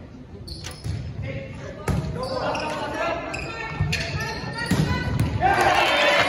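A volleyball rally on a hardwood gym court: a string of sharp smacks of the ball being served and hit, with dull thuds of ball and feet on the floor. Players and spectators shout, louder near the end as the point plays out.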